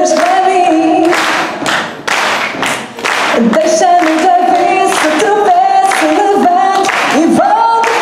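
A woman singing into a microphone, holding long notes, over steady rhythmic clapping; the voice drops out briefly two to three seconds in.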